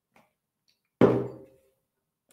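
A drinking glass set down on a desk: one sharp knock about a second in, with a short ringing tail.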